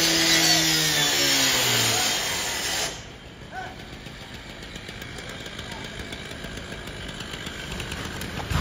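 Gas-powered rotary cut-off saw running loud, its engine note sinking as it comes off throttle, then stopping about three seconds in, leaving quieter steady background noise.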